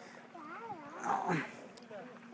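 Faint, indistinct voices with sliding pitch, loudest about a second in, over a faint steady hum.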